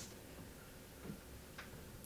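Quiet room tone with two faint ticks, a little after a second in and again about half a second later.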